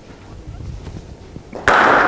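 A cricket bat striking a hard cricket ball once near the end, a sharp crack that rings on in the echo of an indoor net hall.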